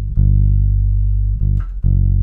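Four-string electric bass played fingerstyle in the key of G: a low note held for over a second, then a short note and another held note starting near the end.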